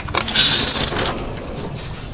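An aluminium sliding glass door unlatched with a click and slid open, its rollers running along the track for about a second with a brief high squeak partway through.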